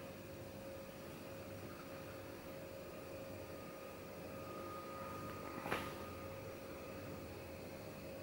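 Faint indoor room tone with a steady electrical hum, and one brief click a little after the middle.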